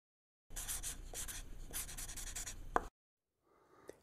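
A pen writing: quick scratchy strokes for about two and a half seconds, ending with a short squeak.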